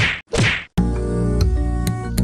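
Two quick swishes with a falling pitch, in a short break where the background music cuts out completely; the music comes back just under a second in.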